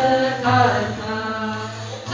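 Dilruba, an Indian bowed and fretted string instrument, played with the bow in a slow, sliding, song-like melody over a steady low drone.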